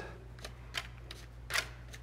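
Plastic scraper pushing coconut-fiber spill absorbent across a stainless steel sheet pan, working it through a battery-acid spill: a few faint scraping strokes, the clearest about one and a half seconds in.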